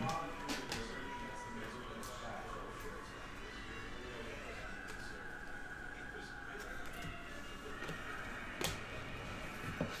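Faint clicks and slides of a stack of chromium trading cards being thumbed through one by one by hand, over low room tone.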